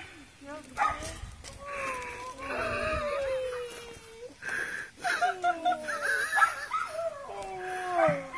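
A schnauzer whining and whimpering in long, wavering whines during an excited greeting with its owner. People's voices and laughter are mixed in.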